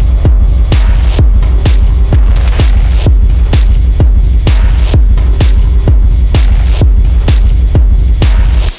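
Dark minimal techno: a steady kick drum at about two beats a second over a heavy, unbroken sub-bass drone, with light ticking percussion in the highs.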